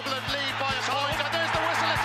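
Podcast theme music with a steady beat of about two strokes a second over a low drone, under an excited sports commentator's voice from a match clip.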